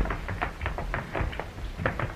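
Hurried footsteps on a hard floor: a quick run of sharp taps, about five a second, with a louder knock near the end.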